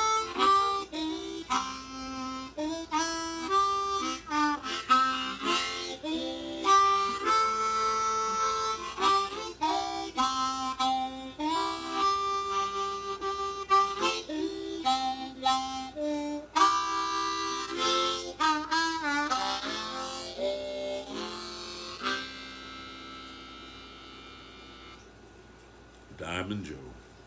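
Solo blues harmonica played with hands cupped around it: a phrase of short notes and held chords, with wavering bent notes late on. It ends on a long note that fades away over the last few seconds.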